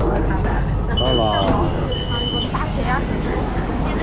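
Metro train door warning beeping twice, two short steady high electronic beeps about half a second apart, as the car doors open at a station, over the train's low rumble and voices.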